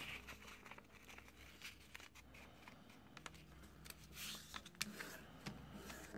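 Faint rustling and light ticks of a sheet of origami paper being folded in half and the crease pressed flat by hand, with a slightly louder rustle about four seconds in.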